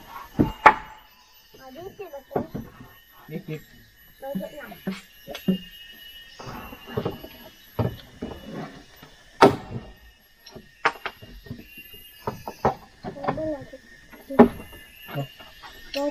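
Irregular knocks and thuds of wooden floor planks being fitted and hammered, a dozen or so scattered sharp blows with gaps between them.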